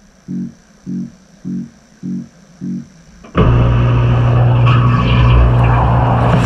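A low pitched note pulses about every 0.6 s. About three seconds in, a loud rush of spraying water with a steady low motor hum starts suddenly: a dishwasher's wash pump and spray arms running.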